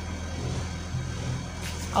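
A steady low hum.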